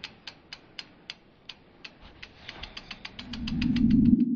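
Logo-reveal sound effect: a run of sharp, clock-like ticks, about three or four a second at first and speeding up to roughly eight or ten a second. Under the later ticks a low whoosh swells and is loudest near the end.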